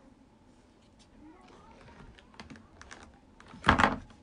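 Light taps and clicks of typing on a smartphone's touchscreen keyboard, a scattered run of small clicks, followed near the end by a short, much louder burst of handling noise.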